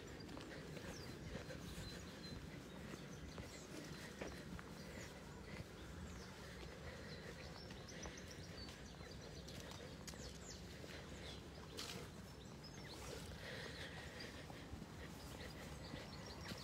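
Faint outdoor background with a few scattered soft knocks and no clear rhythm.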